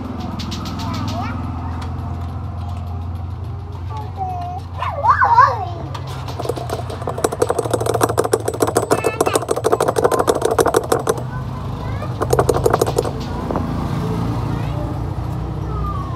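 Background shop and street noise: a steady low traffic rumble, a brief raised voice about five seconds in, and several seconds of rapid rattling pulses in the middle.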